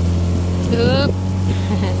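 A small boat's engine running under way with a steady, even drone. A short exclamation from a voice breaks in about a second in.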